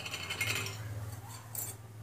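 Quiet kitchen background: a low steady hum with faint soft noises and one light tick about one and a half seconds in.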